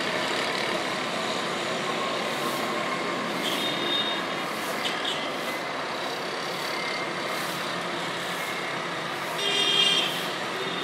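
Steady street traffic: a dense mix of vehicle engines and road noise. A brief high-pitched tone comes just before the end and is the loudest moment.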